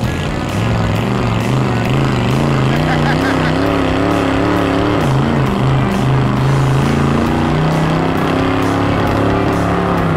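500-cubic-inch Cadillac V8 in a 1973 AMC Gremlin held at high revs through a burnout, the rear slicks spinning; its pitch wavers up and down at first, then holds steadier and a little higher from about halfway.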